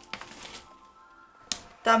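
Crinkly tea packet being handled: a soft rustle of the packaging and one sharp crackle about one and a half seconds in.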